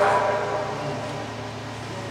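A pause in amplified speech in a hall: the last word's echo fades and leaves steady room noise with a low, constant hum.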